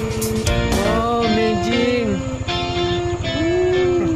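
Background music led by guitar, with a beat of regular drum hits.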